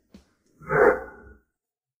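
A single short "mm" from a person, lasting under a second.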